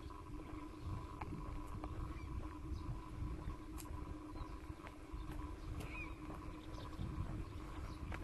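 Quiet lakeside outdoor ambience: a low rumble of wind or handling noise under a faint steady hum, with scattered small clicks and a brief faint chirp about six seconds in.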